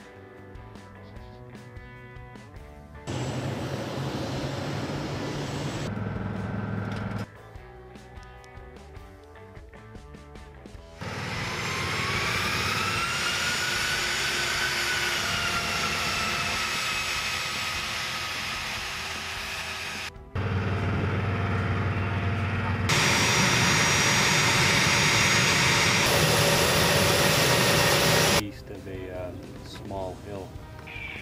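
Fairchild Republic A-10 Thunderbolt II's twin turbofan engines heard across several cut-together shots: a high whine that climbs in pitch and then eases off, and loud stretches of jet engine noise.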